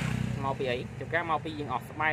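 A man talking, over a low steady rumble.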